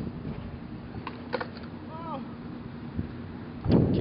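Handheld camera being handled and repositioned: a couple of light knocks and rubbing over a steady background hum, with a voice starting up near the end.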